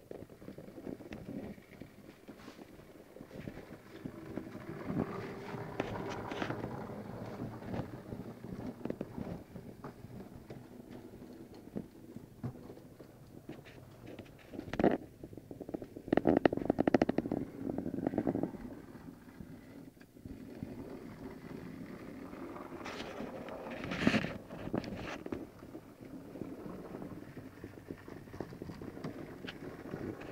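HOe narrow-gauge model train running on its track, a small steam locomotive and coaches giving a continuous uneven rumble of motor and wheels. A few sharp knocks stand out, and about sixteen seconds in there is a stretch of rapid clicking lasting a couple of seconds.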